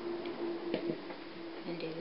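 A few light clicks and ticks from a plastic Knifty Knitter long loom being handled as yarn loops are lifted off one peg and put on the next.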